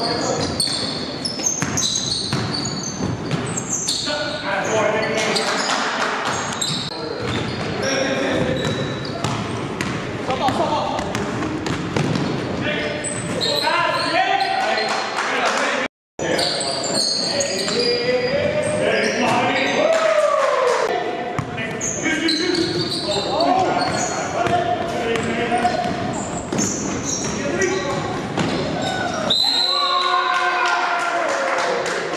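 Live sound of an indoor basketball game: the ball bouncing, sneakers squeaking on the hardwood and players' indistinct shouts, all echoing in the gym. The sound drops out briefly about halfway through.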